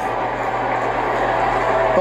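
Steady crowd noise from a stadium in broadcast football footage, heard as an even wash of sound while players lie on the ground after a heavy hit.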